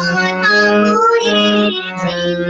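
A woman singing a devotional song over a steady instrumental drone.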